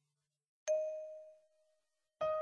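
A single bell-like struck note that sounds about two-thirds of a second in, after a moment of silence, and rings away to nothing within about a second.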